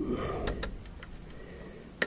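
A few light clicks and a brief scrape of hands handling the rear hydraulic disc brake caliper and its pads, mostly in the first half-second or so, then quieter.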